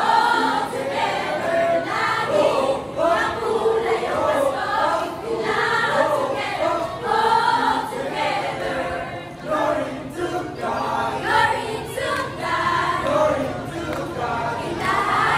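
A choir of women and girls singing together into stage microphones.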